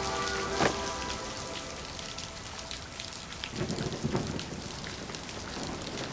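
Steady rain falling, with scattered drops ticking and a few low rumbles in the second half. A music score fades out in the first second.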